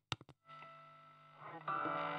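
Electric guitar played through a Joyo JA-03 mini guitar amplifier: a couple of sharp clicks right at the start, then a chord rings out about half a second in and fades, with louder picked notes coming in near the end.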